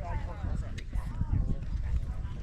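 Indistinct voices of spectators talking, with a gusty low rumble of wind on the microphone underneath.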